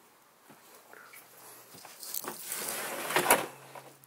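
A trailer's wooden pocket door sliding along its track, starting about two seconds in and ending in a sharp knock.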